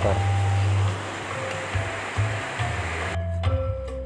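Outdoor wind buffeting the microphone: a steady low rumble with hiss. About three seconds in, it cuts off abruptly and background music with short, sharp notes takes over.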